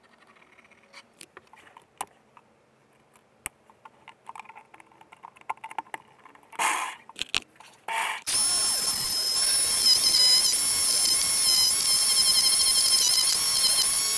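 Light clicks and taps of hands and pencil on wood, then, about eight seconds in, a Black & Decker jigsaw mounted upside down in a homemade inverting table is switched on and runs loudly and steadily. It gives a high motor whine whose pitch wavers slightly.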